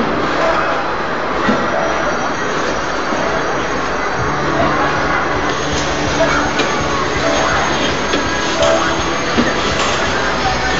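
Noisy mix of chatter and music around a spinning children's amusement ride, with a steady low hum setting in about four seconds in.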